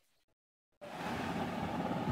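Dead silence for almost a second at an edit, then a steady background hiss with a low rumble, room noise of the kind a fan or distant traffic makes.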